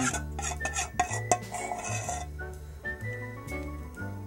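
Background music with held bass notes and a simple stepping melody. In the first two seconds, metal utensils clink and scrape against a mixing bowl.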